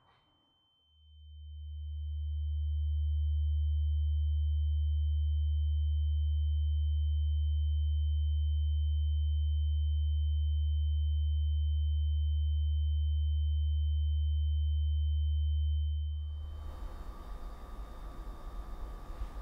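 A deep, steady synthesized drone with a thin, high ringing tone held above it. It swells in over the first couple of seconds, holds level, and fades out shortly before the end into faint room ambience.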